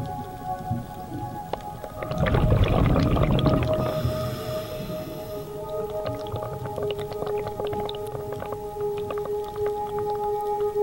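Underwater camera sound: a loud rush of exhaled scuba bubbles about two seconds in, many scattered sharp clicks, and steady droning tones that shift in pitch a few times.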